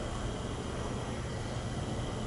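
Steady lobby background noise: an even hiss with a faint low hum underneath, no distinct events.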